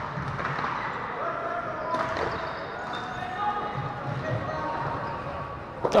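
Indoor hockey play in an echoing sports hall: players' distant shouts and calls, with a sharp knock of stick on ball about two seconds in.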